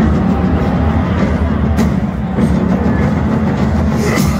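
Deathcore band playing live over a large outdoor festival PA, heard from within the crowd: heavy, low-tuned guitars and drums with a thick bass end that kicks in at the very start.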